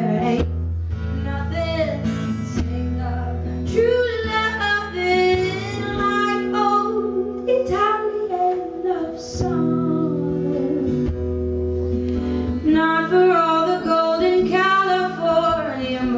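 A woman singing a slow song, accompanying herself on acoustic guitar, with long held and gliding vocal notes over steady guitar chords.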